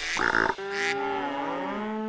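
A cartoon cow's moo, one long call sliding down in pitch at its end, after a short hit about a quarter second in.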